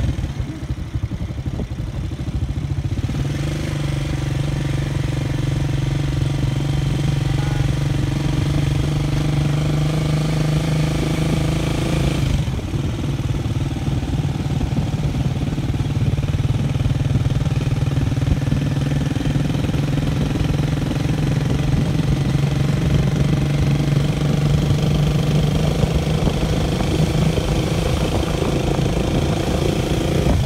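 Motorcycle engine running at a steady cruising speed, its note dipping briefly about twelve seconds in and then picking up again.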